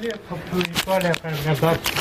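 A person's voice talking, with the rustle and scraping of a phone rubbing against clothing fabric as it is carried.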